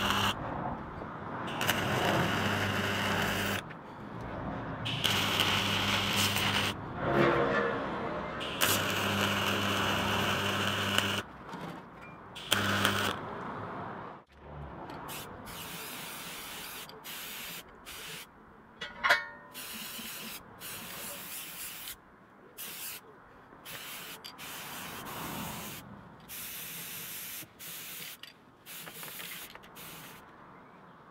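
A MIG welder running in a series of welds a few seconds long, with short pauses between, each with a steady hum. Then an aerosol spray-paint can spraying in many short on-off hisses.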